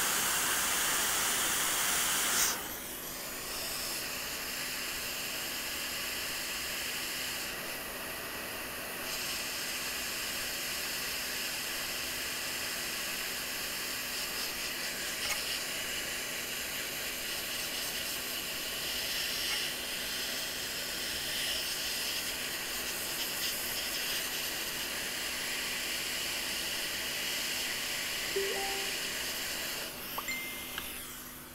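Hot air rework station blowing a steady hiss of hot air over a fluxed logic board. It is louder for the first two or three seconds, then runs on evenly at a lower level.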